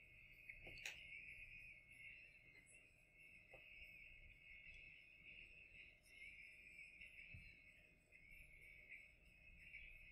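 Near silence: room tone with a faint, thin, high-pitched sound running steadily underneath.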